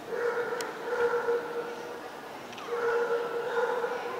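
A dog howling in two long, steady notes, the second starting about two and a half seconds in.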